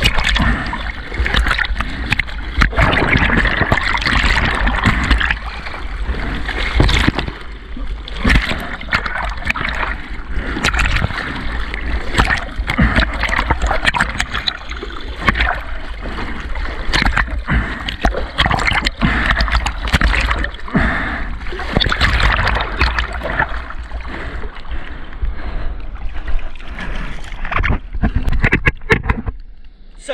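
Seawater rushing, splashing and gurgling over a surfboard's deck right at a board-mounted camera, loud and continuous with irregular sharp slaps and a low rumble of water buffeting the microphone. It eases just before the end.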